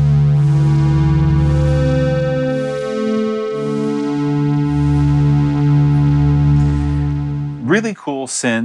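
Shaper iOS software synthesizer playing its 'Damaged Voyage' pad preset: sustained, overtone-rich synth chords, held for a few seconds each, changing about three seconds in and again near five seconds.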